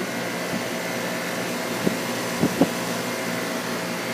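A 2006 Guardian 4-ton central air conditioner's outdoor condensing unit running: a steady whoosh from the condenser fan over the hum of its Bristol compressor, with a few faint knocks about two seconds in.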